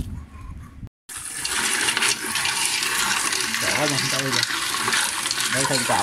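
Kitchen tap running into a pot of water while hands stir and rub freshly caught paddy snails to clean them, a steady splashing hiss that begins suddenly about a second in. A voice talks over it in the second half.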